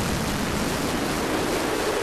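Noise sweep in a hardstyle track's build-up: a loud, even wash of white noise whose bass thins out, with a tone beginning to rise near the end.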